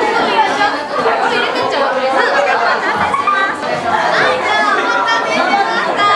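Several people talking at once: overlapping chatter of voices in a busy room.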